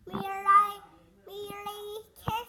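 A young child's voice singing two long held notes, the second starting past the halfway point.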